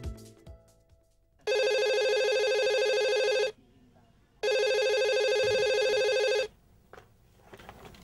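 Corded landline telephone ringing twice, each warbling ring about two seconds long with a short break between them. The tail of theme music fades out just before the first ring.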